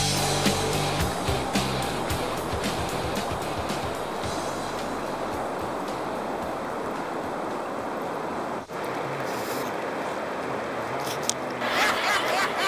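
Guitar music fading out over the first few seconds, giving way to a steady rush of flowing river water.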